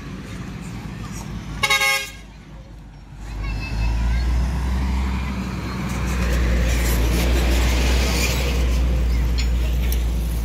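A vehicle horn honks once briefly, then a heavy dump truck passes close by, its engine rumble building from about three seconds in and staying loud.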